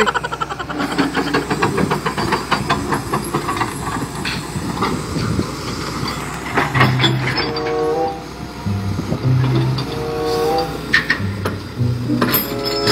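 Hitachi EX200 hydraulic excavator working, its diesel engine running under a rapid, even metallic clatter for the first few seconds. From about halfway through, music with held notes plays over the machine.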